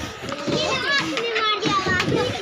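Children's voices, several of them talking and calling at once while they play.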